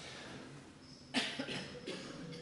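A single short cough about a second in, with a couple of weaker sounds after it, against quiet room tone.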